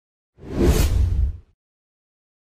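A whoosh sound effect with a deep low rumble under a rising and fading hiss, lasting about a second, for an animated logo reveal. It stops abruptly.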